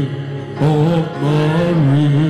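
A man singing a slow worship song through a microphone, holding long drawn-out notes.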